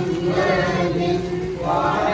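Voices chanting in unison, holding long notes, with a new phrase rising near the end.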